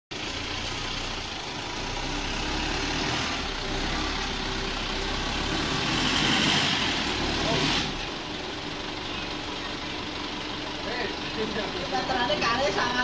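Light pickup truck's engine running steadily, swelling louder for a few seconds and then dropping back about eight seconds in. Voices come in near the end.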